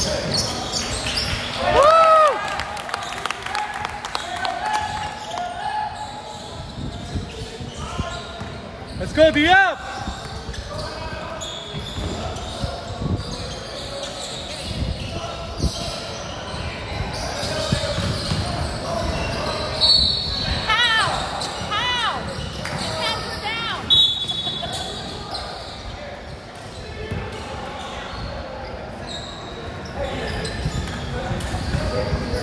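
Indoor basketball game on a hardwood court: a basketball bouncing, sneakers squeaking on the floor (loudest about 2 s in and near 10 s, then a quick run of squeaks past the 20 s mark), under the chatter and calls of players and spectators echoing in a large gym.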